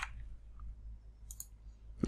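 Two quick computer mouse clicks, close together, about a second and a half in, over a low steady electrical hum; the last keyboard keystroke falls right at the start.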